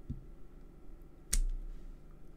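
A single sharp tap of a clear acrylic stamping block about a second and a half in, as a small flower stamp is worked on a scrap of paper on a craft mat.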